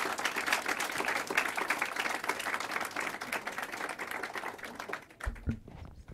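Audience applauding in a lecture room, a dense patter of many hands that dies away about five seconds in, followed by a few low thumps near the end.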